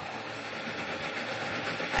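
Countertop blender running steadily, blending a liquid mixture of condensed milk, evaporated milk, cream and sweet corn kernels.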